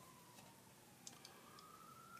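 Near silence: room tone with a few faint clicks from a plastic Blu-ray case being handled.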